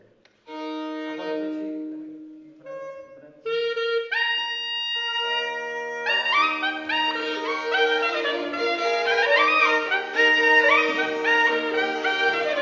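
A Wielkopolska koźlarska folk band of kozioł bagpipe, violin and clarinet starting to play. A few separate notes sound first. From about five seconds a low steady drone comes in, and from about six seconds the three play a lively folk tune over it.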